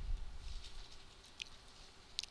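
Quiet room tone with a faint steady hum, and a single faint click about one and a half seconds in.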